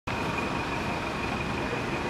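Busy street ambience: steady road-traffic noise with a thin, steady high-pitched whine running through it.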